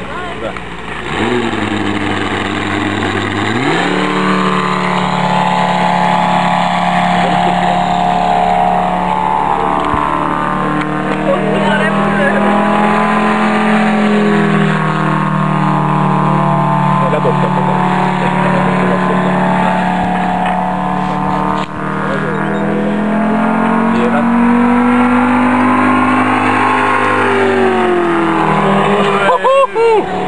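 Engine of a radio-controlled model airplane in flight, running steadily. Its pitch rises and falls several times as the plane passes and turns.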